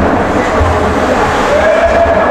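Ice hockey rink ambience during play: a loud, steady wash of noise with a low rumble, and a faint held tone coming in past the middle.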